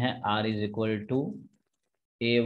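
Only speech: a man's voice talking for about a second and a half, then cut to silence.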